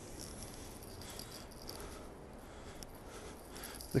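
Quiet indoor room tone with a few faint ticks.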